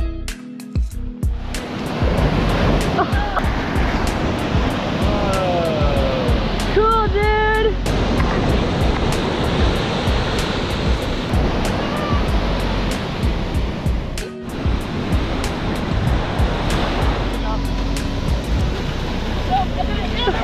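Ocean surf breaking and washing up a sandy beach in a steady rush that comes in about a second and a half in, with people's voices calling out over it a few times; background music plays at the start.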